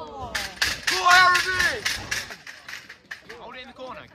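Football spectators at the pitch-side railing shouting encouragement over a quick run of sharp claps, several a second, for about two seconds; the shouting is loudest about a second in, then dies down to scattered voices.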